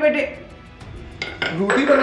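Kitchen utensils clattering: two or three short sharp knocks, one after another, about a second in, over faint background music.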